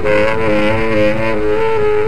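Tenor saxophone improvising a line of short, shifting notes in free avant-garde jazz, over a lower held tone from the upright bass.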